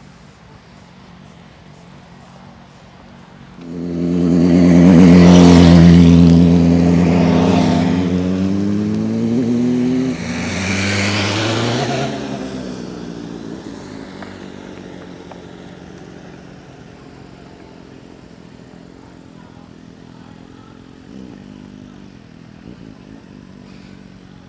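A motor vehicle's engine passes close by: it comes up loud a few seconds in, its note falls away, picks up again briefly around ten seconds in, then fades slowly into the distance.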